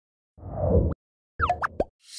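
Animated logo sound effects: a low swelling whoosh about half a second in, then a quick cluster of short blips with falling pitch near the end.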